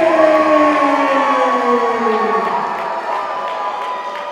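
A ring announcer's amplified voice over the hall PA, drawing out a fighter's name in one long call that slides slowly down in pitch and fades about two and a half seconds in. A crowd cheers underneath.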